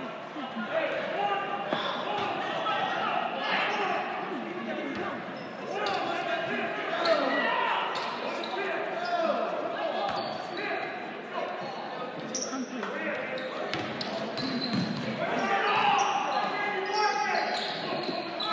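Voices calling out in an echoing gymnasium, with a basketball bouncing on the hardwood floor and scattered sharp knocks.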